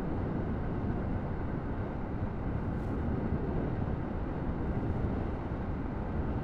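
Steady rush of wind and road noise while riding a 125 cc motorcycle at about 30 mph, with no distinct engine note standing out of it.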